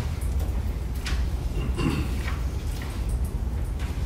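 Paper rustling and a few small knocks as a signed document is handled and passed along a meeting table, over a steady low room hum.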